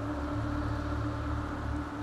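A steady low drone with one held tone above it, unchanging throughout.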